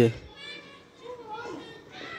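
Faint distant voices calling, high and gliding in pitch, over a low background murmur.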